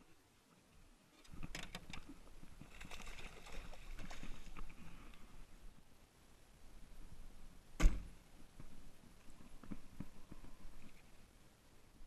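A bowfishing bow being shot: one sharp crack about eight seconds in. Scattered rustling and knocks of handling come before it.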